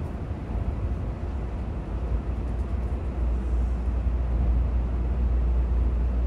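Low, steady rumble of a Tokaido Shinkansen train running, heard from inside the passenger car, growing a little louder toward the end.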